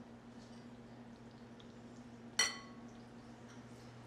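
A single clink of a small glass cruet against a glass mixing bowl about two seconds in, ringing briefly, over a faint steady hum.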